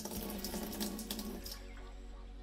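Water pouring out of a tipped glass bowl into a stainless steel sink, splashing for about a second and a half, then trailing off.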